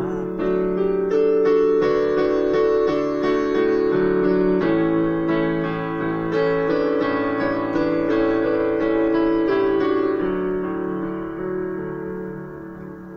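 Electronic keyboard with a piano sound playing an instrumental interlude: a melody over chords, notes struck about twice a second. About ten seconds in it settles on a held chord that fades away.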